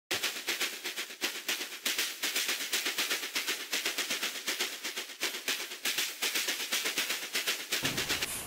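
A fast, even string of sharp percussive hits, several a second, over a low pitched undertone, cutting off abruptly near the end.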